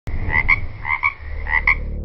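Frog croaking: three double croaks spaced about half a second apart. A low steady drone comes in about a second in.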